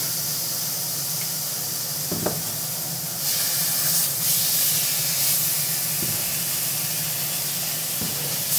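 Beef sizzling steadily in a hot iron pan: an even frying hiss that swells a little midway, over a low steady hum, with one light knock about two seconds in.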